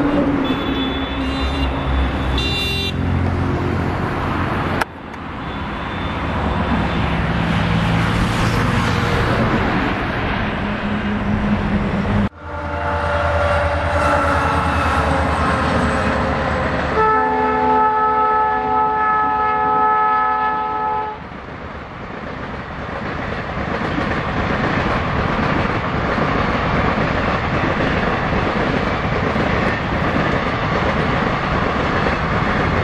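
A train horn sounds one multi-tone blast lasting about four seconds, near the middle. Then the coaches of a passing express train rumble by steadily. Earlier on, steady outdoor noise is broken by two abrupt cuts.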